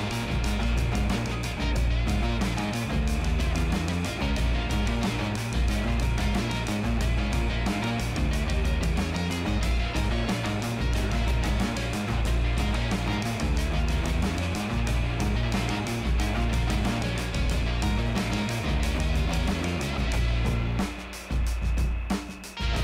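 Background music with a steady beat throughout.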